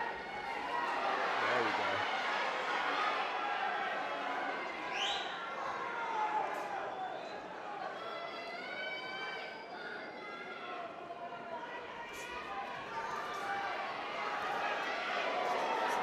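Ringside crowd at a boxing match talking and calling out, a steady hubbub of voices in a large hall, with a short rising whistle about five seconds in and a few sharp knocks from the action in the ring.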